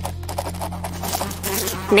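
Pen scratching quickly across paper in a run of short, irregular strokes, over a low steady music drone.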